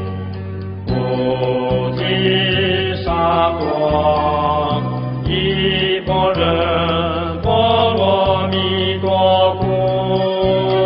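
Buddhist devotional chant music: a wavering melodic line over a steady low drone, with a light tick about four times a second.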